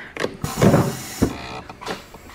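Handling noises at a heat press: a few sharp clicks and knocks, with a short rasping, whirring noise about half a second in.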